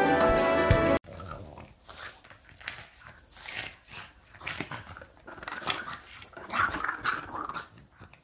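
Two French bulldogs play-fighting, with a run of short, irregular grunts and growls that are loudest near the end.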